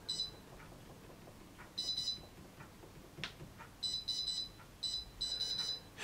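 Tefal Easy Fry & Grill XXL air fryer's touch control panel beeping, a short high beep for each tap as the cooking time is stepped down to five minutes. The beeps come singly and in quick runs, most of them in the last two seconds.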